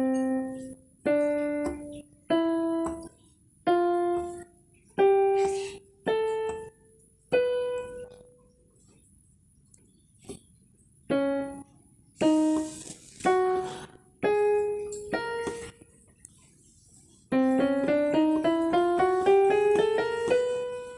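Electronic keyboard with a piano voice playing single notes one at a time, stepping up the scale from middle C, each note fading out before the next. After a pause, a second slow rising series follows, then a quicker run up the scale near the end.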